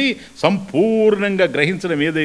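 Only speech: a man speaking into a microphone, lecturing.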